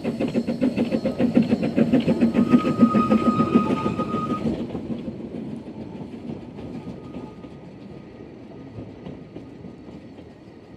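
Narrow-gauge Hunslet 2-6-2T steam locomotive Russell working past with rapid, even exhaust beats, loudest about three seconds in. A thin, steady high tone sounds briefly just before the middle. The beats fade out about halfway through, leaving the quieter rolling of the heritage coaches as they pass.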